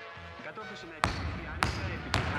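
A basketball bouncing twice, about a second in and again just over half a second later, each bounce a sharp thud with a short ring after it.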